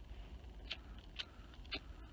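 A handheld cigarette lighter struck three times, sharp clicks about half a second apart, with the flame catching on the third strike.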